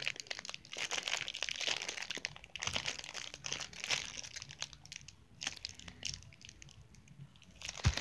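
Clear plastic wrapping of a Tsum Tsum mystery pack crinkling in a person's hands while a small figure is worked out of it. The crinkling is dense and full of little crackles for about the first half, then thins to quieter, scattered rustles.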